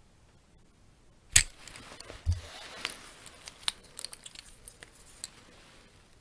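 Metal finger rings clicking and tapping against each other close to the microphone: one sharp loud click about a second and a half in, a dull thump just after, then a run of small, irregular clicks.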